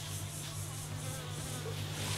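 Flying insects buzzing steadily, with a faint high-pitched insect chirr pulsing about five times a second over it.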